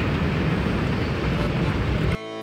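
Running escalator: a steady low rumble with a hiss over it, even throughout.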